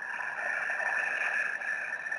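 A long, audible breath by the narrator into the microphone, a steady rush of air that swells slightly and then fades away.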